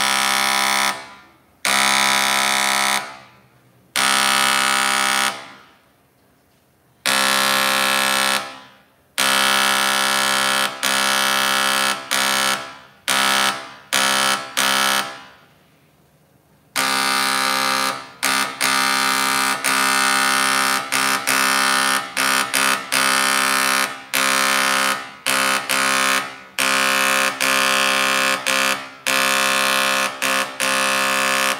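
Electric marking machine's engraving stylus buzzing as it engraves a metal plate. It runs in steady-pitched bursts: a few longer strokes of a second or two with pauses in the first half, then rapid short bursts with brief breaks from about halfway on.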